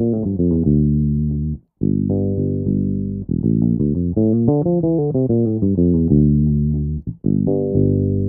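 Electric bass guitar played solo, running a scale back down from the top of a two-octave B-flat major seventh arpeggio. Quick runs of single notes alternate with a few longer held notes, with short breaks about two seconds in and near the end.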